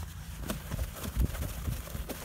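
Scattered light, irregular taps and rubbing from hands working on a car's side-mirror glass, a razor blade and a paper towel against the glass.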